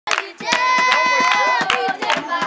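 A group of schoolgirls singing a held note together while clapping their hands in rhythm, with sharp claps repeating several times a second.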